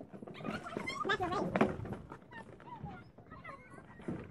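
A corrugated-plastic nucleus hive box being folded and handled, with light clicks and rustles. A high, wavering vocal cry rises about a second in, and smaller wavering calls follow later.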